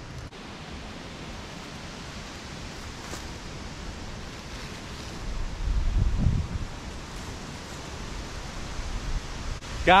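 Wind on the microphone, a steady hiss with leaves rustling, swelling into a deeper gust of buffeting about six seconds in.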